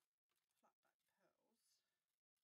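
Near silence, with a faint, indistinct voice.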